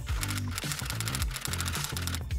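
A quick run of typewriter key clicks as the text types out, over background music.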